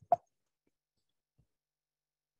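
A single short plop just after the start, then near silence.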